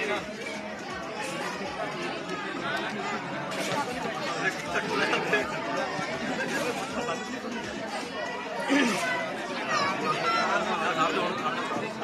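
Several men talking over one another in lively group chatter, no single voice standing out.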